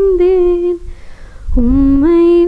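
A woman's voice singing a slow, unaccompanied devotional melody into a microphone, holding long notes with gliding slides between them. The voice breaks for a breath just before the middle and comes back on a lower note that rises.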